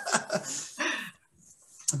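Laughter trailing off, fading out a little past a second in and followed by a short, nearly silent pause.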